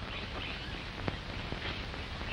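Birds chirping now and then over the steady hiss of an old film soundtrack, with a sharp click about a second in.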